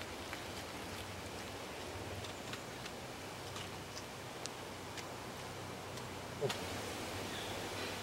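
Quiet woodland ambience: a steady faint hiss with scattered light ticks and rustles from hen-of-the-woods clumps being handled among dry leaves on the forest floor.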